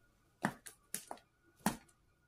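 Young striped skunk's claws tapping on the hard plastic floor of a tub as it moves about: about five sharp clicks, the loudest about half a second in and near the end.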